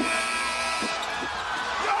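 A steady horn-like tone in the first second as the game clock hits zero, then a few short knocks of a basketball bouncing on the rim.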